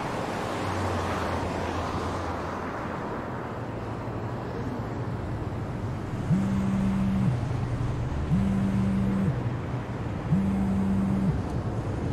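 Car driving with steady road and engine noise. From about six seconds in, a mobile phone gives three low, steady buzzes for an incoming call, each about a second long and about two seconds apart.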